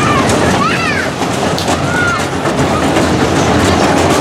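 Spinning arm ride running at speed, with a low rumble under a busy crowd of voices; short high squeals rise and fall about a second in and again about two seconds in.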